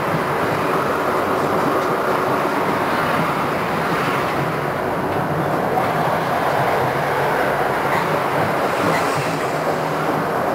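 Konstal 105Na + 105NaD tram set running along the track, heard from inside the tram: a steady, continuous rumble of wheels on rails and running gear.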